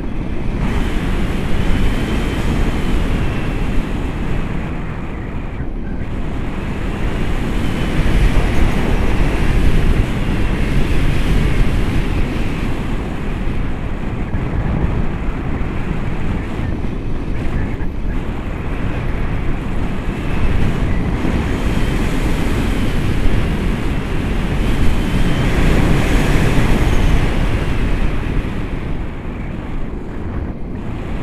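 Wind noise from the airflow of a paraglider in flight buffeting the camera's microphone: a loud, steady rush that rises and falls in strength.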